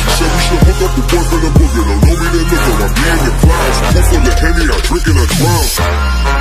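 Hip hop track with a rapped vocal over a deep, sustained bass and a heavy kick drum landing about once a second.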